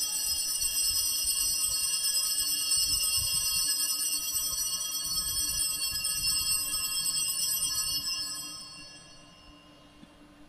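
Altar bells rung at the consecration, during the elevation of the host: a steady jingling ring of several high bell tones that fades away about eight to nine seconds in.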